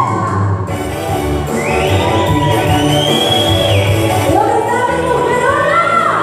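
Live singing over backing music through a PA. The singer holds long notes that slide up in pitch, over a steady bass line.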